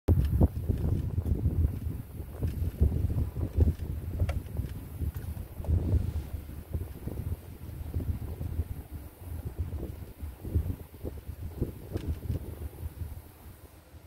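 Wind buffeting the microphone: an uneven, gusting low rumble with a few light clicks, dying away near the end.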